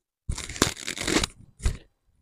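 Hands twisting and gathering long hair into a bun: a rustling, crunching noise in two bursts, a longer one and then a short one near the end.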